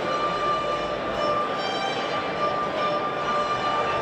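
Small string ensemble of violins and cello playing, with one long high note held steadily over a sustained lower accompaniment.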